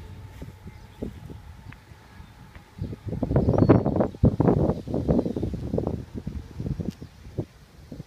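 Rustling and wind buffeting on a handheld microphone during a walk outdoors, with a dense run of irregular crackles loudest through the middle of the stretch.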